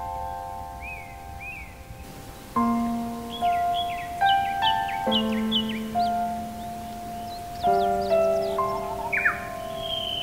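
Slow, gentle solo piano, moving to a new chord about every two and a half seconds, over background birdsong of short chirps, with a quick falling call near the end.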